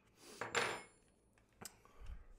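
Metal hand tools clinking and scraping as wrenches are handled on a caster's bolt and lock nut, with a brief high metallic ring about half a second in and a sharp click near the end.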